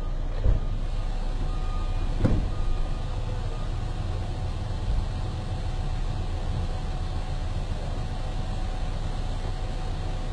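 Steady low rumble of a motor vehicle, with two short knocks about half a second and two seconds in.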